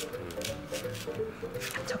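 Background music over several short, sharp knife strokes as a kitchen knife slices a Korean large green onion (daepa) lengthwise on a wooden cutting board.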